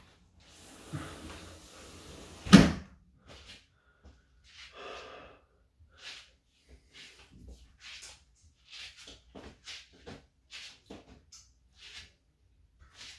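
A sliding window shut with a sharp thud about two and a half seconds in, cutting off the low hum of the outdoors; afterwards only faint scattered clicks and rustles.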